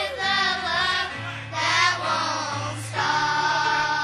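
A children's choir singing together over a musical accompaniment, holding one long note through the last second.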